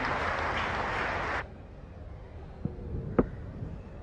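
Cricket crowd applauding a departing batsman, cut off suddenly about a second and a half in. Quieter ground ambience follows, with a single sharp knock a little after three seconds.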